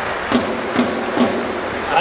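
Three evenly spaced drum beats, a little under half a second apart, over the steady murmur of a stadium crowd.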